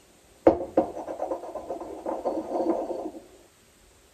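A pestle knocks once into a small white mortar, then grinds and scrapes around the bowl for about three seconds, crushing half a tablet to powder.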